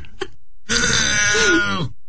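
A person's drawn-out vocal groan, about a second long, starting partway in, held at a steady pitch with a brief lift near the end.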